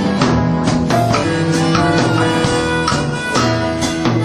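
Live rock band playing: electric guitar, bass guitar and drum kit in a steady rhythm.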